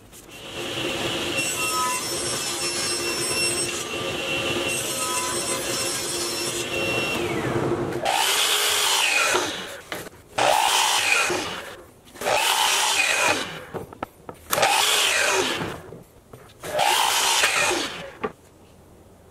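A steady power-tool hum, followed by five short bursts from a Festool KS 120 sliding miter saw, each a quick spin-up and cut that winds down, about two seconds apart.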